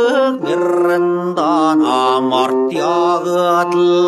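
A male voice singing a Mongolian narrative folk song in long, wavering notes over steady instrumental accompaniment.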